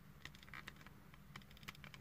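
Faint, scattered small clicks of a plastic Transformers action figure's parts being handled and tabbed into place, over near silence.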